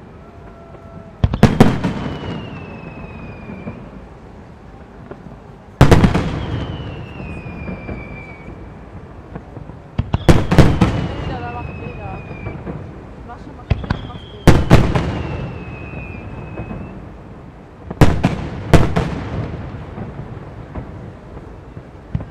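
Japanese aerial firework shells bursting overhead: about nine sharp booms, several in quick pairs, each echoing and dying away over a second or two. A high falling tone trails after several of the bursts.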